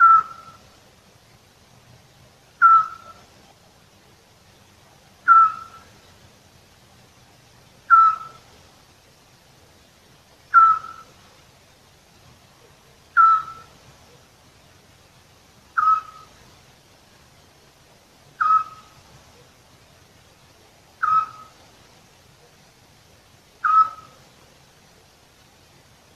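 European scops owl singing: a single short, clear whistled note repeated steadily about every two and a half seconds, ten times.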